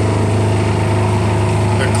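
A steady, loud low hum with a hiss above it, unchanging in pitch and level, from a running motor or electrical hum; a spoken word comes near the end.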